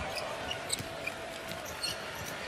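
Basketball bouncing on a hardwood arena court during live play, over a steady arena background noise, with a couple of short knocks about three quarters of a second in and again near the end.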